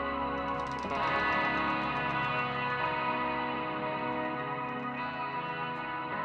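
Live instrumental rock: a Gibson Les Paul electric guitar holding long sustained notes over electric bass, the chord changing about a second in.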